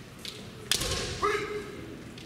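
One sharp crack of a bamboo shinai about a second in, followed by a short kiai shout from a kendo fighter.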